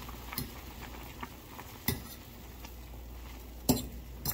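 A metal fork stirring instant noodles in a pot, clinking against the pot a few times, the loudest clink near the end.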